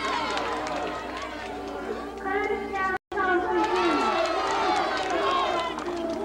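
Crowd of many voices talking and calling out over one another at the same time. Halfway through, the sound cuts out completely for an instant at a tape edit.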